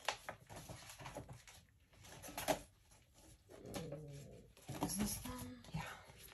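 Handling of paper swatch charts in plastic sheet protectors: scattered rustles and a few sharp taps, with a short low hummed murmur from a voice about four seconds in.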